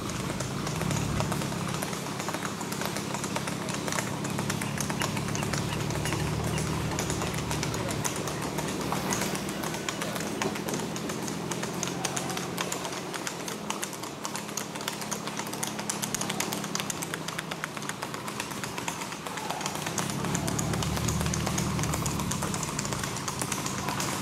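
Hooves of two gaited horses (Tennessee Walking Horse type) beating rapidly and evenly on asphalt at a fast singlefoot gait, a quick stream of clip-clops, over a steady low hum.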